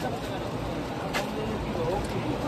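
Low, steady background noise with faint voices, and a single sharp click about a second in.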